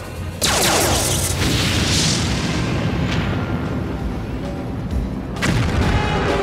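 Sci-fi ray-gun blast sound effects. About half a second in comes a sudden blast with a falling sweep, running into a long noisy explosion boom that dies away, and a second sharp blast with a falling sweep comes near the end, over music.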